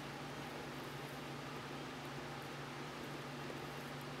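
Steady background hiss with a constant low hum, room tone with something like a fan running; no distinct handling sounds stand out.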